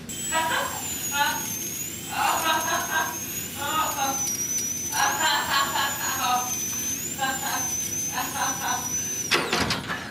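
A high-speed dental drill whines, its pitch wavering up and down, while a man laughs and cries out in short bursts; the whine cuts off suddenly near the end.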